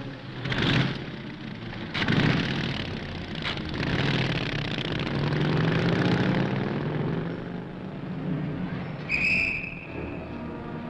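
Car engine and street traffic noise, with loud surges about half a second and two seconds in. Midway the engine pitch rises as the car accelerates away, and a short high-pitched tone sounds near the end.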